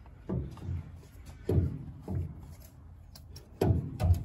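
Handling noise as a turbocharger is worked out of a tight diesel engine bay: a few separate knocks and scrapes of metal parts, the loudest near the end.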